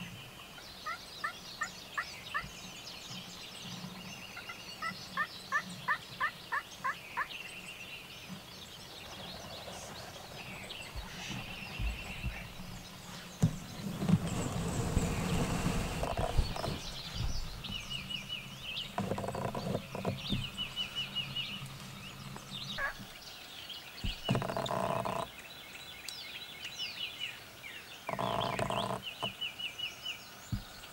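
Wild turkeys gobbling several times in the second half, each gobble a dense rattle of about a second. Two quick runs of rapid yelping come earlier, with songbirds chirping throughout.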